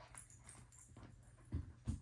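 F1b goldendoodle puppies scrambling in a plush dog bed: light scratching and rustling, then two dull thumps near the end, about a third of a second apart.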